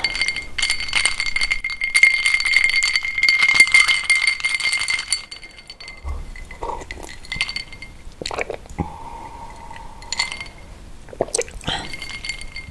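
Ice cubes rattling and clinking against the sides of a cut-crystal drinking glass, the glass ringing through the first half. Sparser, softer clinks follow as the glass is tipped to the mouth.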